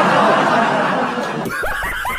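Laughter: a dense mass of laughing, then from about a second and a half in a quick run of short 'ha' bursts.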